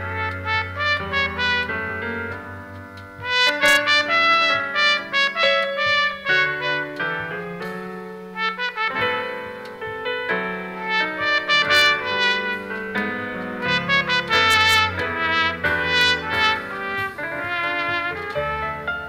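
Trumpet playing a melody over an accompaniment, with notes of varying length and a sustained bass line underneath.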